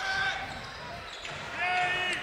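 Basketball being dribbled on a hardwood court, with players' voices and crowd murmur echoing in the arena.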